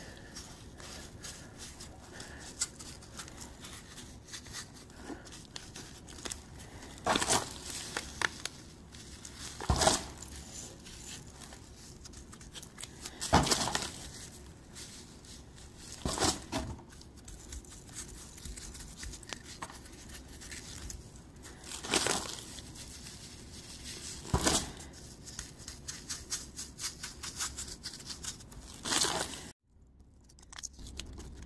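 Silicon carbide grit being sprinkled from a plastic bag and pressed by hand into wet epoxy on a pistol grip: quiet gritty rustling and scraping, with about seven short louder rustles spaced a few seconds apart.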